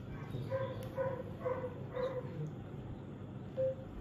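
A dog barking off-screen: four short barks about half a second apart, then a single one near the end.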